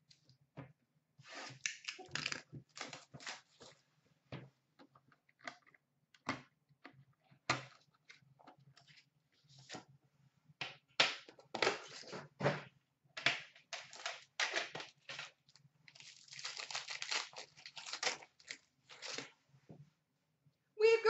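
A sealed Upper Deck Premier hockey card box being torn open by hand: irregular tearing and crinkling of its wrapping and cardboard in quick bursts, busiest in the second half.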